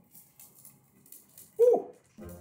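A man's short pitched cry, an 'ah' that bends up and falls, about one and a half seconds in, as he lifts a cast-iron pot's lid off boiling broth. Before it, only a few faint light clicks.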